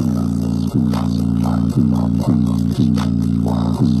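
JBL Charge 4 portable Bluetooth speaker playing bass-heavy music loudly, with deep, sustained bass-guitar-like notes re-struck every half second to a second.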